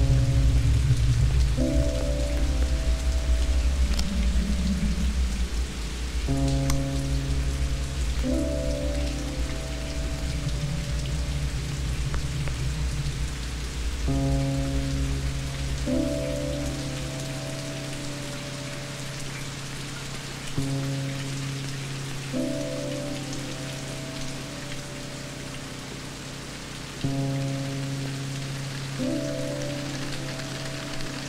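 Steady heavy rain with a suspenseful film score over it: held low notes and a short two-part phrase that comes back about every six and a half seconds. A deep rumble under them fades out a little past halfway.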